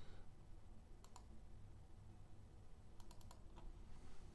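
Faint clicks of a computer mouse selecting and opening a file: a single click about a second in, then a quick run of clicks about three seconds in, over a low room hum.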